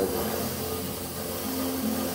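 Native American (Choctaw) flute music playing in the background, held notes changing pitch, over a steady hiss.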